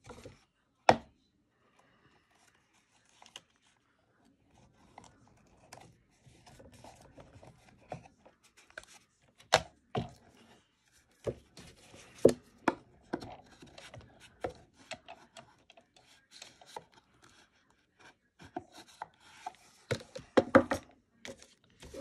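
Cardstock being handled and cut on a Fiskars paper trimmer: scattered sharp clicks and knocks with rubbing and scraping of paper between them. It is mostly quiet for the first few seconds apart from one click, then grows busy.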